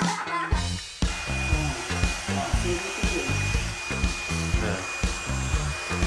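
Hair dryer blowing steadily with a thin high whine, dipping briefly about half a second in, while being used to dry a wet puppy. Background music with a steady beat runs underneath.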